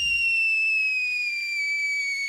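Cartoon sound effect of a fired cannonball whistling through the air: one long high whistle, slowly dropping in pitch as the ball falls. The low rumble of the cannon shot dies away in the first half second.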